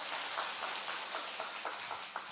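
A large congregation applauding: the steady patter of many hands clapping together.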